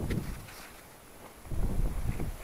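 Wind buffeting the microphone in gusts, with a quieter lull in the middle and a second gust near the end.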